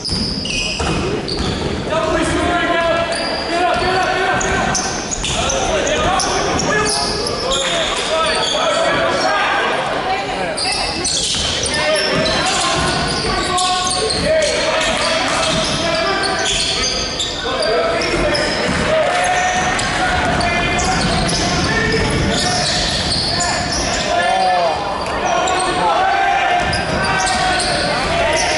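A basketball bouncing repeatedly on a hardwood gym floor during play, with players and spectators calling and talking throughout, all echoing in a large hall.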